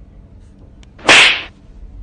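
One sharp, loud slap, about a second in and over in under half a second: a slap across the cheek.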